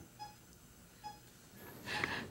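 Faint short electronic beeps about a second apart from a hospital patient monitor, then a breathy rush of air rising near the end.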